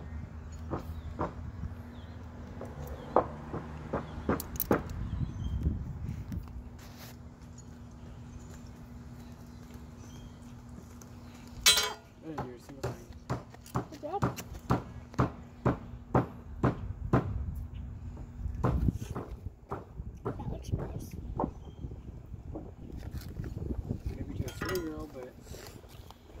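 Fillet knife clicking and scraping against a small fish's skin and bones as its meat is cut away by hand: a run of irregular short ticks, with one sharper click about midway. A steady low hum sits underneath.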